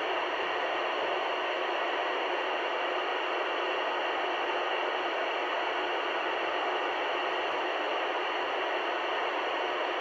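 Steady loud FM receiver hiss from a Yupiteru multi-band receiver tuned to the ISS downlink on 145.800 MHz: open-squelch noise with no station on the channel, as the space station has stopped transmitting between answers.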